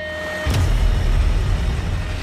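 Semi truck engine running, with a dense rushing noise and low rumble swelling in about half a second in.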